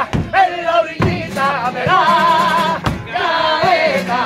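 Male voices singing the closing phrases of a Cádiz carnival pasodoble, holding long notes with vibrato, over a strummed Spanish guitar whose strokes fall at the start, about a second in and near the end.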